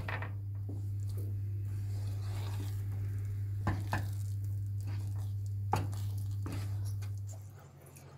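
Wooden spatula scraping and knocking against a nonstick frying pan as thick pumpkin halva is stirred until it comes away from the pan, with a few distinct knocks. A steady low hum runs underneath and drops away near the end.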